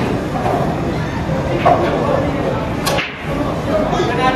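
Pool break shot: a sharp crack as the cue drives the cue ball into the racked balls, then another sharp ball-on-ball click about a second later, over murmured chatter.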